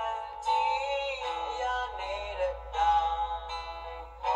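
A Burmese pop song playing back from a computer: a solo voice singing phrases with short breaks between them, over the accompaniment.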